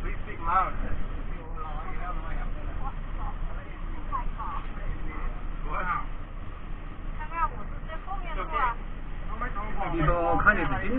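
Indistinct chatter of passengers inside a van cabin, over a steady low rumble of the van's engine and road noise.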